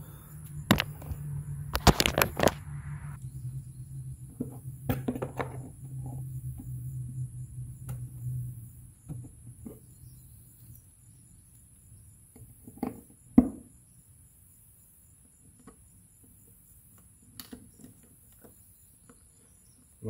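Scattered clicks and knocks of a plastic feeder drum and its metal funnel being handled as push-in plastic rivets are fitted, with a cluster of knocks about two seconds in and the sharpest knock about two-thirds of the way through. A low steady hum runs under the first half and stops.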